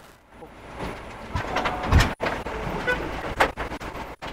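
A car's engine running as it waits at a metal compound gate, with knocks as the gate is swung open, a low thump about two seconds in and a sharper knock about three and a half seconds in.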